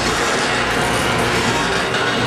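Ceiling-mounted garage door opener running as the door travels down its track: a steady mechanical rumble with a low hum. Music plays underneath.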